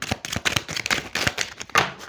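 A deck of oracle cards being shuffled by hand: a quick, uneven run of small card-edge flicks and clicks.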